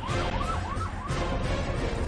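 A yelping siren-style sound effect, a tone near 1 kHz rising and falling about five times a second, over intro music with a heavy bass. The siren cuts out about a second in and the music carries on.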